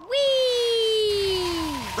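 A cartoon child character's long "whee!" cry as it sets off sledging downhill, starting high and falling slowly in pitch for almost two seconds.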